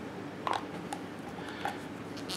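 A few light plastic clicks as the cap of a prescription pill bottle is handled and fitted onto the bottle.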